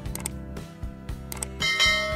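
Subscribe-button animation sound effects: two mouse clicks about a second apart, then a bright ringing notification chime near the end, over background music.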